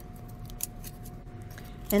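A few faint, scattered clicks from a thin punched tin sheet being worked by hand, over a low steady hum.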